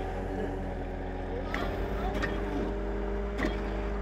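Helical earth screw being driven into the ground by a hydraulic drive head, with the powering machine's engine running steadily underneath. The screw is meeting tougher soil below the topsoil.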